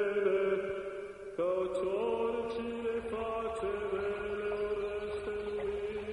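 Background music of slow chanting: long held notes over a steady drone, with a new phrase starting about a second and a half in.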